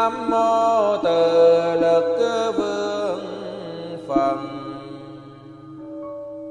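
A voice chanting a Vietnamese Buddhist invocation in long held notes that step down in pitch, over soft background music with a steady low drone; the chanting fades out near the end.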